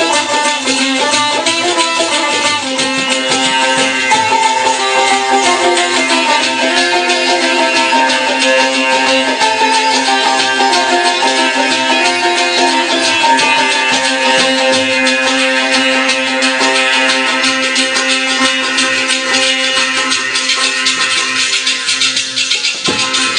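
Two sitars playing a Pothwari folk tune together in rapid strokes over a steady low drone note.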